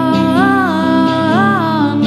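A woman singing long held notes with no clear words, each stepping up in pitch and back down, twice, over her own electric guitar.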